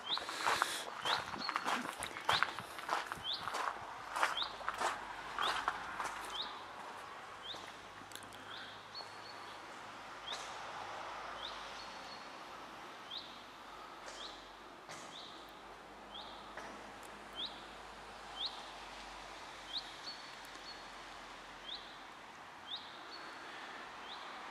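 Footsteps crunching on a gravel path for the first several seconds, the loudest sounds here. A small bird repeats a short, high, rising chirp about once a second throughout, faint over a quiet hiss.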